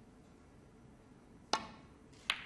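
A snooker cue tip striking the cue ball once: a single sharp click about a second and a half in.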